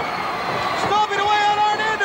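Wrestling arena crowd noise, with one long held yell starting about a second in.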